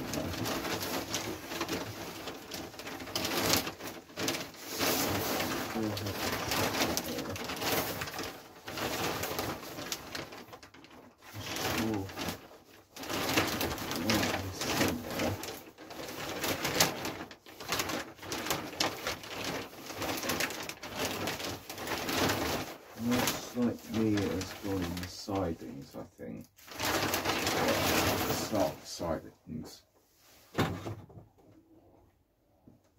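Birds cooing, pigeon- or dove-like, over a rough noise that drops out briefly a few times.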